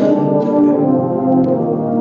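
A large massed tuba and euphonium ensemble playing a Christmas carol in sustained low brass chords, moving to a new chord at the very start.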